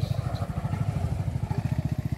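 An engine running steadily at idle, giving a fast, even low putter.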